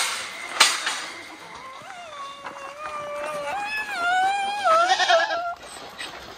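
A goat giving one long, wavering bleat lasting about four seconds, stepping up in pitch partway through. Two sharp knocks come just before it, near the start.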